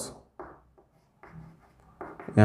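Chalk scratching on a chalkboard in a few short, faint strokes as letters are written.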